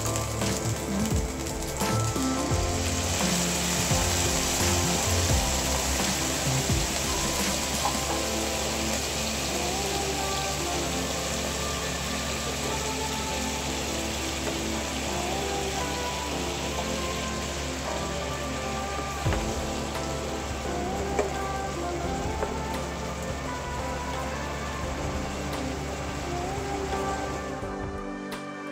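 Onions, garlic and canned sardines sizzling in hot oil in a frying pan. The sizzle gets fuller about three seconds in and then goes on steadily.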